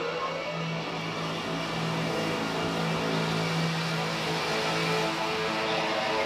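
Rock song intro: held notes sustained at several pitches, swelling slowly in loudness, with no vocals.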